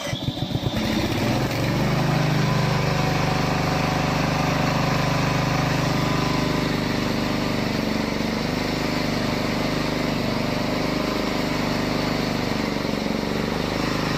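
Remote-control mowing tank's gasoline engine cranked by its electric starter, rapid even pulses that catch about a second in. It then runs steadily.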